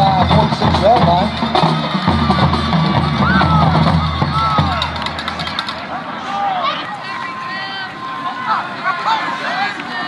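Hip-hop beat with deep bass and ticking hi-hats, with voices over it. The beat cuts out suddenly about five and a half seconds in, leaving only voices.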